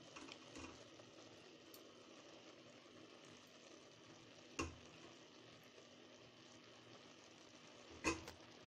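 Faint steady hiss of a pot of rice cooking over a low gas flame, with a single knock about halfway through.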